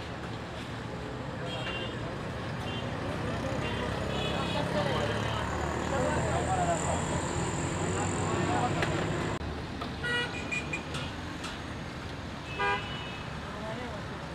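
Busy street ambience: background chatter and passing road traffic, with a brief vehicle horn toot about ten seconds in and another near the end.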